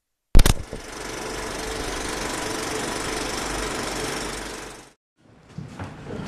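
A sudden loud knock, then a steady machine-like whirring noise with a faint hum that fades away after about four seconds.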